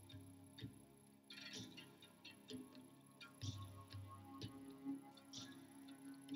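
Faint, slow ambient music with gentle plucked notes over a held low tone.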